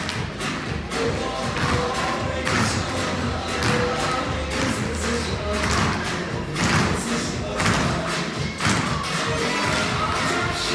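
A group of tap dancers' shoes striking the floor together in time to recorded music played over loudspeakers.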